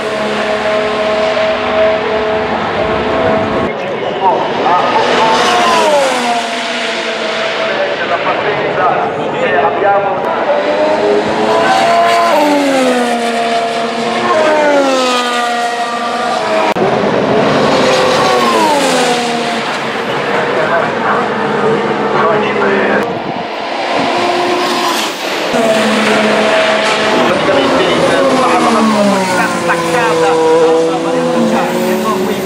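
Formula 1 cars' turbocharged V6 hybrid engines passing close by several times, their engine notes dropping in steps as the cars brake and downshift, with short rises as they accelerate away.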